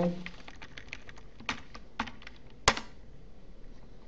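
Typing on a computer keyboard: a run of light, irregular key clicks, with a few louder, sharper clicks near the middle, the loudest about two and a half seconds in.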